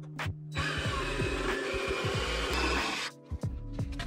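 DeWalt 20V cordless jigsaw cutting across a pine 1x8 board, running steadily from about half a second in and stopping suddenly about three seconds in.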